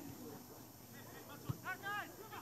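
A football kicked on grass, one sharp thud about one and a half seconds in, followed by short high-pitched shouts from players on the pitch.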